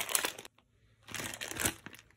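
A clear plastic zip-top bag crinkling as it is handled, in two short bursts about a second apart.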